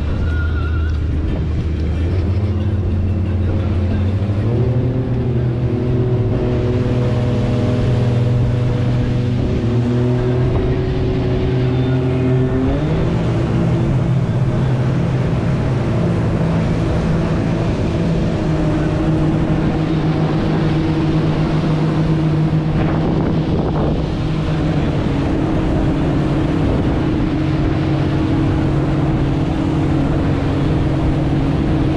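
Motorboat engine running under way, its pitch stepping up twice, about four seconds in and again about twelve seconds in, as the throttle is opened, over a steady rush of wind and water.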